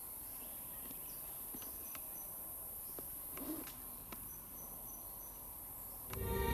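Tropical forest insects giving a steady, high-pitched drone, faint overall. A thin high whistle is heard twice, along with a few faint clicks.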